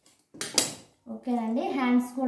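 Metal tailoring scissors set down on a concrete floor with one sharp clatter about half a second in, followed by a voice speaking.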